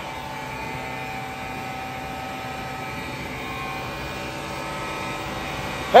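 Steady mechanical drone with several constant tones: a pneumatic dry-bulk trailer being unloaded, its blower pushing PVC resin up a silo's fill pipe.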